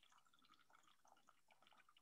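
Very faint trickling and dripping of water poured from a glass bowl into a coffee-filter-lined funnel, with scattered small irregular drips.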